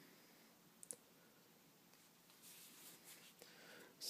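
Near silence, broken about a second in by one brief small click: the push-button switch of a LaserMax laser on a Ruger LC9 pistol being pressed to turn the laser off.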